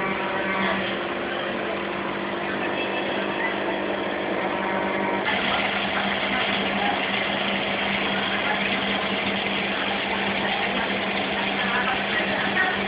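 A steady mechanical hum with a constant low tone under an even hiss; the hiss grows louder about five seconds in.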